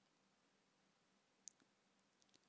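Near silence, broken by a single faint computer mouse click about one and a half seconds in.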